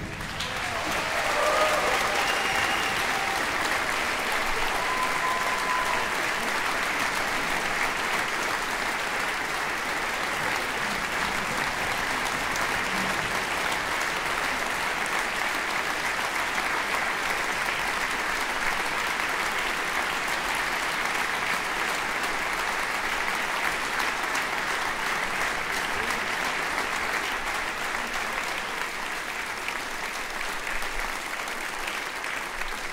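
Concert hall audience applauding steadily after a wind band's march ends, building up over the first two seconds and tapering slightly near the end.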